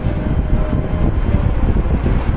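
Steady low rumbling background noise carried over a video-call microphone, with a faint thin tone for a moment early in the first second.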